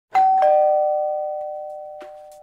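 A two-note ding-dong chime: a higher note struck, then a lower one about a quarter second later, both ringing on and slowly fading away.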